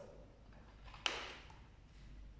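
A sheet of printed paper swishes once, briefly, about a second in, as a picture card is swapped in front of another; otherwise only faint room tone.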